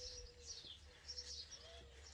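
Faint small birds chirping in the background, a few short falling chirps, over a faint steady hum.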